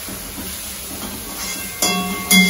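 Shredded cabbage and vegetables sizzling with a steady hiss as they are stir-fried in a hot steel kadai over a high gas flame, with a spatula turning them. A brief louder burst with some ringing comes near the end.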